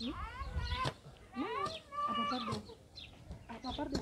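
Two drawn-out vocal calls, the first rising in pitch and the second rising and then falling, followed by short, choppy voice sounds near the end.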